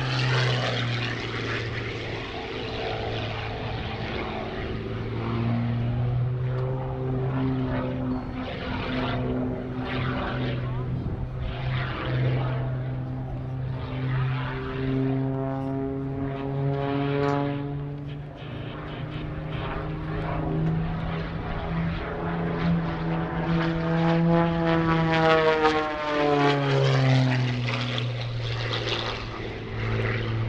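Single-engine propeller aerobatic monoplane, the MXS-RH, running at high power through its manoeuvres. The engine-and-propeller pitch slides down and back up several times as the plane dives, climbs and passes overhead.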